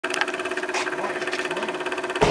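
Small model steam engine for a radio-controlled boat running steadily on steam, with a rapid, even beat and a constant tone underneath.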